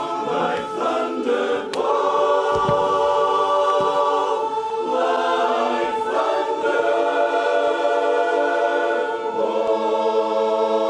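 Men's barbershop chorus singing a cappella in close four-part harmony, holding long chords that shift a few times. A sharp click and a brief low thump sound about two seconds in.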